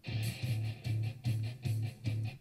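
Preview of a stock background music track, with a repeating low bass note pulsing about three times a second. It sounds a little too aggressive for the video.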